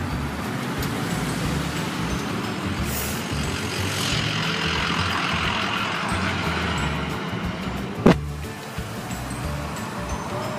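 Road traffic passing close by, with a pickup truck going past in the middle and the rushing noise swelling and fading as it goes. A single sharp knock about eight seconds in.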